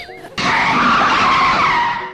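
Tyre-screech skid sound effect, a loud, steady noise that starts about half a second in and cuts off sharply, for a motor scooter braking to a stop.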